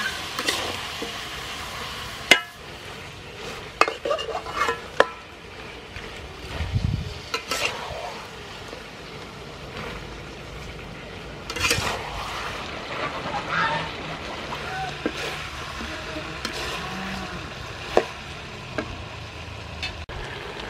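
Metal ladle stirring chicken pieces in a large steel wok, with the chicken sizzling. The ladle scrapes the pan and now and then knocks sharply against its metal rim.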